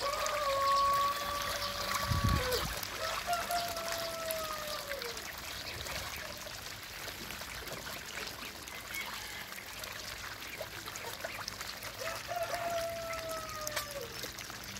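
Water splashing and trickling in a small duck pond as ducks bathe. Three long drawn-out calls, each about two seconds and dropping in pitch at the end, come near the start, a few seconds in, and near the end.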